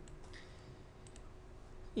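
A few faint computer mouse clicks over a low, steady background hum.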